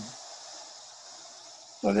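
Steady high hiss of a waterfall running full after monsoon rains, heard through a video call's screen-shared audio.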